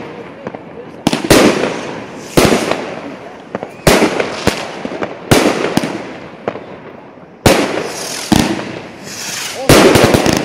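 Aerial firework shells bursting overhead: six loud, sharp bangs, one every one to two seconds, each fading out over about a second, with smaller pops in between.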